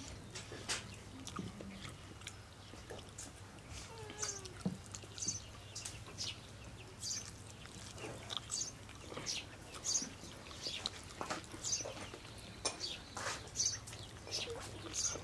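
Close-miked eating sounds: wet chewing and lip smacks on a mouthful of rice and fried fish roe, a short click or smack every half-second to a second, with fingers squishing and gathering rice on a clay plate.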